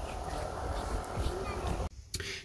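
Outdoor ambience: a steady low rumble with faint distant voices. It cuts off abruptly near the end.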